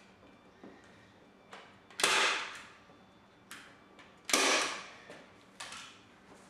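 Staple gun firing twice, about two seconds apart, each shot a sharp snap that trails off over about half a second, driving staples through vinyl into a seat cushion. Fainter taps and rustles come in between.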